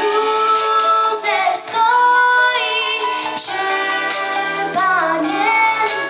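Children's choir of girls singing a Polish Christmas carol (kolęda) into microphones, in long held notes that move from phrase to phrase, with a new phrase beginning at the very start.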